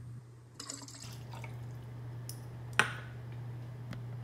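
Mango nectar poured from a shot glass into a plastic shaker cup, a liquid splashing and dripping sound, over a steady low hum. A single sharp knock about three seconds in.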